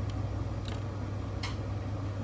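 Yamaha AST-C10 boombox cassette deck in play mode with the tape not moving: a steady low hum and two faint mechanical clicks. The owner thinks the play belt has gone.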